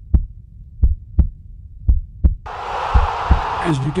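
Heartbeat suspense sound effect: low double thumps about once a second. About two and a half seconds in, a steady rushing noise joins it, and a man's voice starts just before the end.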